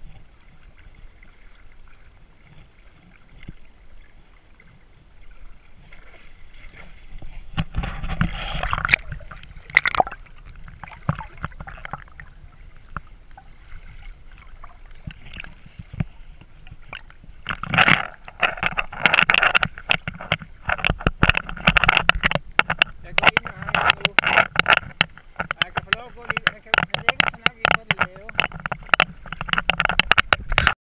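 Lake water sloshing and splashing around a camera held at the surface beside a wading horse. It starts faint, grows into choppy splashing about eight seconds in, and becomes busy, continuous splashing from a little past halfway.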